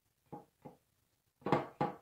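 Four hollow knocks of a paper cup tapped against the stretched canvas: two light taps, then two louder ones near the end.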